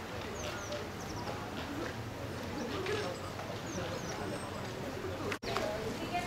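Murmur of visitors talking, with small birds chirping a few times and pigeon-like cooing. The sound cuts out for an instant near the end.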